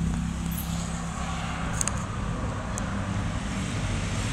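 A steady low engine hum with a noisy, traffic-like wash over it, and a couple of light clicks about two seconds in and near the end.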